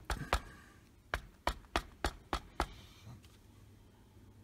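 A wooden stamp block dabbed repeatedly onto an ink pad to ink it up, making sharp taps: two at the start, then six more at about three a second that stop a little before three seconds in.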